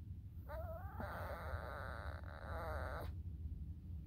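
Small dog whining: one long, wavering, high-pitched whine that starts about half a second in and stops about three seconds in, over the steady low rumble of a moving car's cabin.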